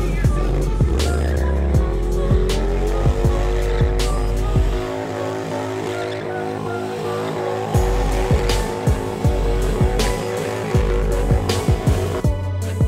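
Bagger motorcycle's engine doing a burnout: the revs climb over the first three seconds and are then held high and steady while the rear tyre spins and squeals on the pavement. Music with a beat plays underneath.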